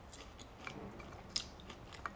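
A person chewing chicken, quietly, with a couple of faint sharp clicks, the clearest a little after halfway.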